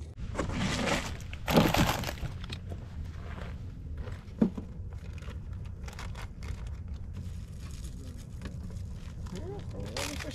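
Plastic food packaging crinkling and rustling, with small clicks and knocks of containers being handled at a portable camp grill. The rustling is loudest in the first two seconds, and one sharp knock comes about four and a half seconds in.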